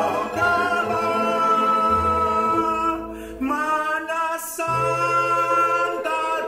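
A man singing a Neapolitan song in long, held notes with vibrato over instrumental accompaniment with a bass line. There is a brief break in the voice about three seconds in before a new phrase begins.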